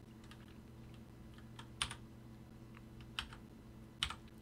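A few faint, scattered keystrokes on a computer keyboard's number pad, the clearest a little before the two-second mark and about three seconds in, over a low steady hum. The numpad keys are not registering.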